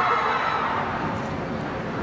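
A crowd of fans squealing and screaming in delight, many high voices at once, slowly dying away.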